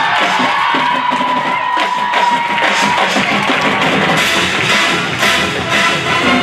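Marching band playing live, full ensemble with drum strikes, a long high tone held through the first half.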